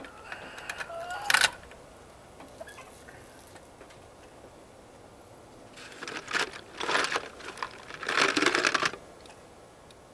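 Cold lead sprue scraps clinking as they are dropped into a Lee electric lead-melting pot, with a sharp clink about a second and a half in, then a few seconds of metallic clattering from about six to nine seconds in as more sprue is gathered by hand. The added cold scrap lowers the temperature of the melt.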